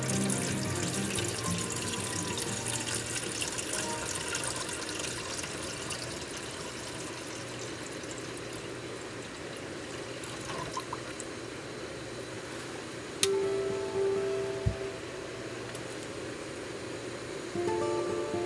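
Water poured in a thin stream from an insulated bottle into the metal pot of a Trangia camping stove, splashing and trickling, strongest in the first few seconds and thinning out later. Soft background music plays under it, and a sharp click and a low thump come about three-quarters of the way through.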